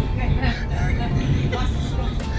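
Low, steady rumble of a passenger train heard from inside the carriage, with voices and laughter over it.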